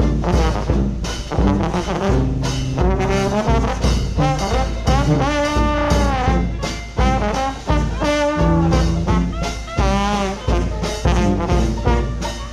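A traditional jazz band plays an up-tempo tune with a steady beat. The trombone leads with sliding notes over trumpet and clarinet, with banjo and drum keeping time and a brass bass line stepping along underneath.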